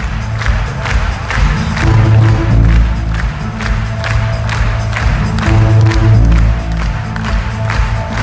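Live rock band playing an instrumental passage: a steady drum beat over heavy bass, with no singing.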